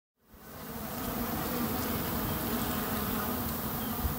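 Bees buzzing together in a steady swarm-like hum, many wavering pitches overlapping, fading in over the first second.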